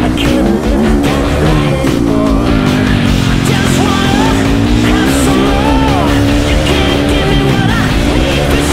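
Dirt bike engine running hard on a motocross track, its pitch repeatedly rising and falling as the throttle is worked through turns and jumps, with background music over it.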